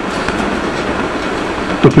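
A steady, even background hiss fills a pause in the talk. A man's voice starts again near the end.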